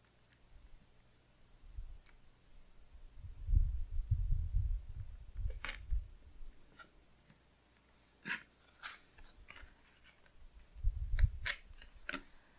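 Hands pressing and smoothing washi tape onto a paper planner page, then handling the tape roll: low rubbing bumps with a few sharp clicks and ticks.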